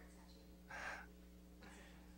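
Near silence with a steady low room hum, broken about two-thirds of a second in by one short, sharp breath close to the microphone.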